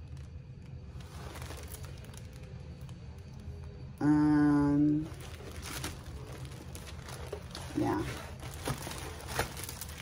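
Clear plastic protective film on a rolled diamond painting canvas crinkling and rustling as the canvas is unrolled and handled. About four seconds in, a woman hums a short 'mm' for about a second.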